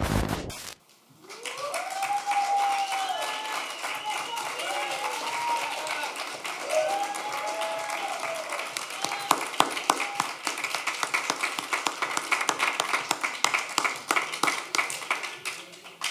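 The music cuts off, and about a second later an audience starts clapping and cheering, with whoops and shouts over the first half. The clapping goes on steadily until near the end.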